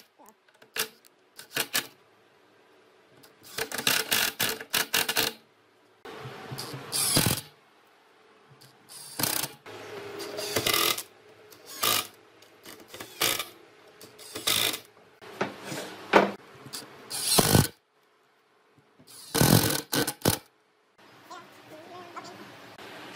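Cordless Makita 18V impact driver driving screws into wooden cabinet panels: about ten short bursts of rapid hammering, each a second or less, with pauses between screws.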